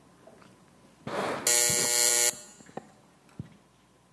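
An electric buzzer in the assembly chamber sounds once, a harsh, even buzz lasting just under a second after a short hiss, then cuts off abruptly. It signals the start of a minute of silence. A couple of faint knocks follow.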